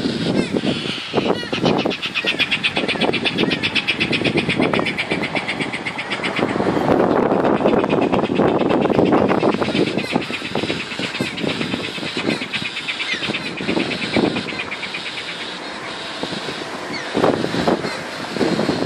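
Passing road traffic makes a steady, shifting noise that swells and fades, loudest about seven to ten seconds in. Over it runs a fast, high, buzzing chatter, broken off about six seconds in and resuming for a few seconds more.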